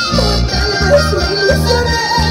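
Live band music with electric guitars over a steady, bouncing electric bass line.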